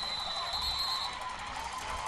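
Referee's whistle blowing to end the play: one steady high tone that stops about a second in, over low stadium crowd noise.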